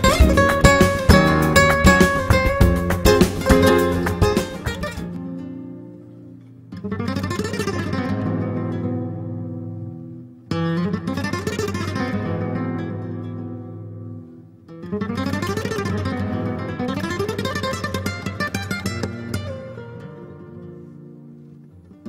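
Solo flamenco guitar. Fast, dense picking and strummed chords break off suddenly about five seconds in. Three slower phrases follow, each starting loud with rising runs of notes and dying away.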